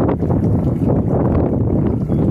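Wind buffeting the microphone: a loud, steady, low rumble throughout.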